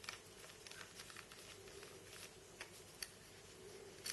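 Faint, scattered small clicks from a precision screwdriver with a T6 Torx bit backing a mounting screw out of the side of a laptop hard drive, over a faint steady room hum.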